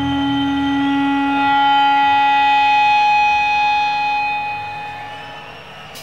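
A live band holding one long sustained chord of several notes, steady for about four seconds, then fading away near the end.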